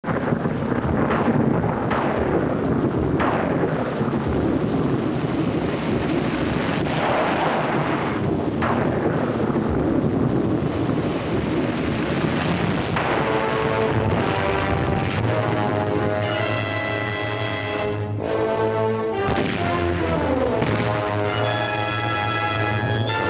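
Old film-soundtrack thunderstorm: a steady roar of rain and storm noise broken by several sharp thunder cracks. About two-thirds of the way through it gives way to dramatic orchestral music.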